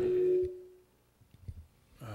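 A man's drawn-out hesitation vowel 'é…' into a microphone, fading out in the first second. Then near silence with a few faint knocks.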